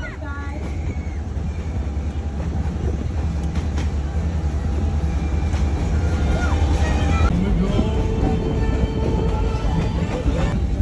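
Excursion train rolling along, a steady low rumble from the ride, with faint music and voices in the background.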